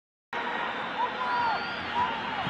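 Stadium crowd noise from a football match broadcast: a steady din of many voices that cuts in abruptly a moment after the start.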